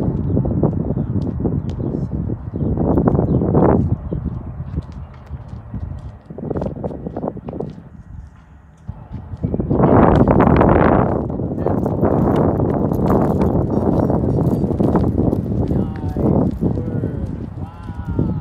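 Footsteps on asphalt as a man walks a small dog at heel, under a loud low noise that swells and fades, strongest about ten seconds in.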